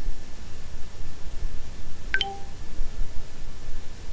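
A single short click with a brief ringing tone about halfway through, over a steady low background rumble and hiss.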